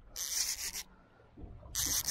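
Fishing reel under heavy load from a big fish, giving two short rasping bursts about a second apart.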